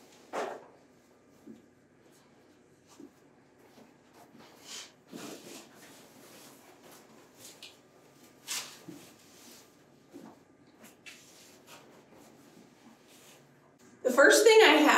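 Canvas drop cloth being spread out over the floor by hand: faint rustling and handling of the heavy fabric, with a few brief louder sounds, the loudest about half a second in.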